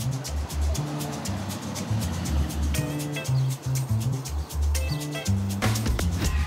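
Background music with a steady beat: heavy bass notes over quick, regular percussion ticks.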